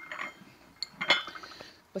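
Gzhel porcelain teacups and saucers being handled: a light click, then one sharp ringing clink of porcelain about a second in.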